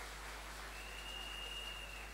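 Faint, scattered applause from a church congregation over a low mains hum from the sound system. A faint steady high whistle comes in under a second in.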